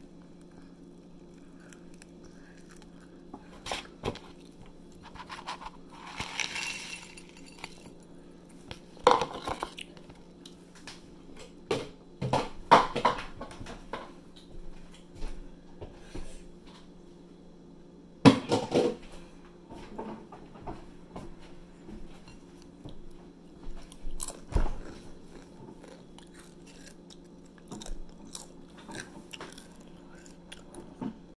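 A person chewing and crunching snack food close to the microphone, in irregular bites with a few louder crunches, over a steady low hum.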